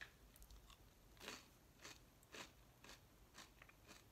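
Near silence: room tone with several faint, short noises, the clearest about a second in.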